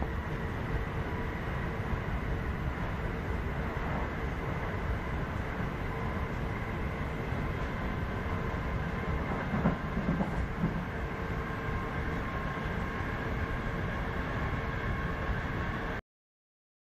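A passenger train running along the track, heard from inside the carriage: a steady rumble of wheels on rails with a faint steady whine over it, and a short run of louder knocks about ten seconds in.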